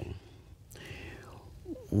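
A man's quiet, breathy breath taken in a pause in his speech, with his voice starting again near the end.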